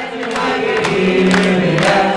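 Music with a group of voices singing held notes that change every half second or so.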